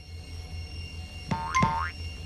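Cartoon "boing" sound effect: two quick springy twangs about a second and a half in, the second gliding upward in pitch, over soft background music.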